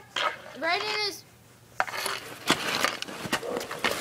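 A child's high voice calls out briefly about half a second in. After a short lull come several sharp knocks and clatters, hockey sticks striking the ball or puck and the pavement.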